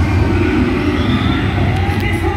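Theme-park dark ride in motion: a loud, steady low rumble from the ride vehicle and its onboard sound system, with the ride's effects and music faintly mixed in over it.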